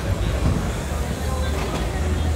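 Outdoor city-street ambience: a steady low rumble with faint voices of passers-by.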